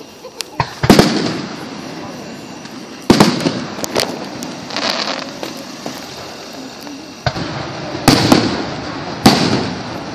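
Fireworks exploding: a run of sharp bangs, each with an echoing tail. The biggest come about a second in, around three and four seconds, and just after eight and nine seconds, with smaller pops between them.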